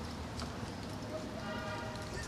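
Footsteps on a paved sidewalk over street background noise, with a faint voice talking in the distance near the end.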